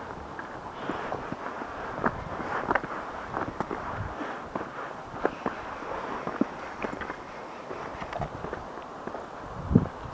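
Footsteps of a person walking on stone steps and a paved path: irregular light taps and scuffs.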